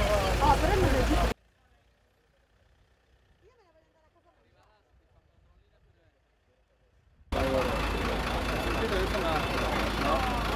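Outdoor hubbub of people talking over a running vehicle engine, which cuts out abruptly about a second in, leaving near silence for some six seconds, then resumes just as abruptly.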